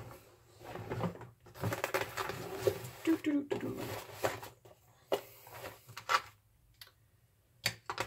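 Off-camera rummaging for a small Torx (T8) driver bit among tools, with a few separate sharp clicks and clatters of small hard objects in the second half.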